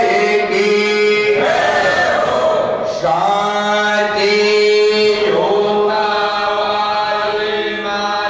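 A group of men chanting a Hindu aarti hymn together in unison, holding long sustained notes for a couple of seconds at a time between short breaks.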